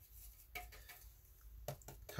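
Mostly quiet, with a few faint taps and clicks of a paintbrush mixing watercolour paint in a palette: one about half a second in and a few more near the end.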